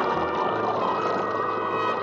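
Cartoon sound effect of an elephant's trunk sucking a tub of water dry: one long, steady slurping noise, with orchestral music holding notes underneath.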